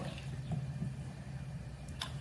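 Quiet workshop room tone with a steady low hum, and a faint light tap or two as small wood pieces are handled and set down on a wooden workbench.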